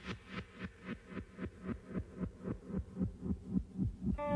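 Helicopter rotor blades beating in a steady rhythm of about four pulses a second, the sound growing duller as it goes on.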